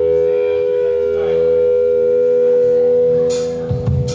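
An amplified electric guitar chord held and ringing as a steady drone, with a low thump near the end.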